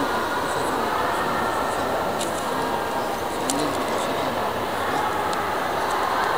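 Steady background hum of a large hall, with faint distant voices and a few light clicks.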